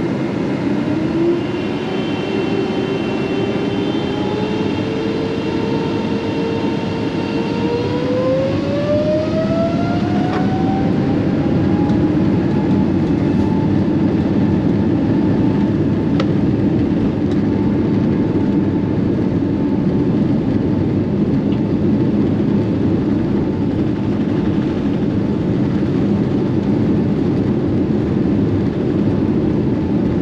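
Cabin noise of a Boeing 777-300ER on its takeoff roll: the GE90 jet engines at takeoff thrust under a steady, loud roar, with a whine that climbs in pitch over the first ten seconds or so and then holds steady.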